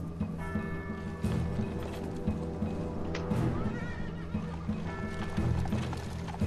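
A horse whinnies once, briefly, about three and a half seconds in. It sounds over dramatic background music with a slow, steady low beat and held chords.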